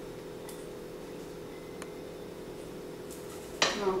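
Kitchen room tone with a steady low hum and two faint light clicks. Near the end comes a sharp breath and a spoken "oh".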